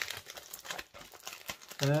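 Crinkling and crackling of a silver bubble mailer and plastic wrap being pulled open by hand, in short irregular rustles. A voice starts near the end.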